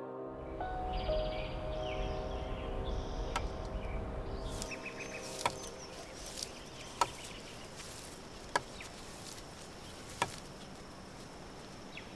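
Forest ambience: birds chirping and a steady high insect drone, with a handful of sharp clicks scattered through it. Soft music tones fade out at the start, and a low rumble sits under the first few seconds.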